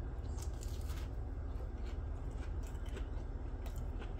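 Bite into a crispy breaded, cream-cheese-stuffed jalapeño popper and chewing, heard as a few faint crisp crunches over a steady low hum.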